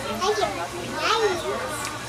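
Children's high-pitched voices chattering and calling, with no clear words.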